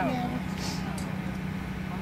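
A steady low mechanical hum under faint voices of people talking.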